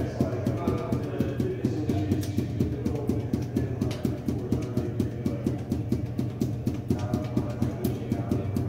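Five juggling balls force-bounced off a hard floor, each throw down making a short knock in a fast, steady rhythm of about five bounces a second.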